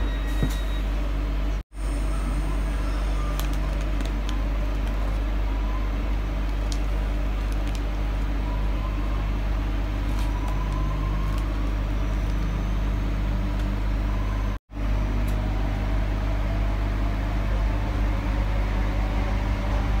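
Steady low rumble of a passenger train running, heard from inside the carriage, with a faint rising whine partway through. The sound cuts out completely for a moment twice, about 2 seconds in and again about 15 seconds in.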